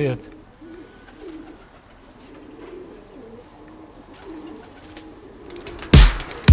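Domestic pigeons cooing softly, short low wavering coos about once a second. Music starts abruptly at the very end.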